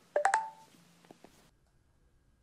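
A quick cluster of electronic clicks and short beeps about a quarter second in, followed by a few fainter clicks around a second in.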